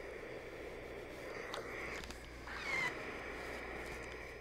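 Faint sounds of a steam iron pressing and sliding over a quilted fabric seam, with fabric handling and a light click about one and a half seconds in.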